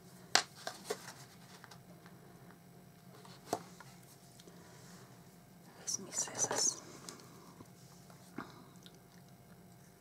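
Folded cardstock being handled while twine is threaded through a punched hole: a few sharp clicks in the first second and another about three and a half seconds in, then a short crackly rustle of card about six seconds in.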